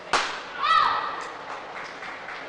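A badminton racket strikes the shuttlecock with one sharp crack. About half a second later comes a short, loud squeal that rises and falls in pitch.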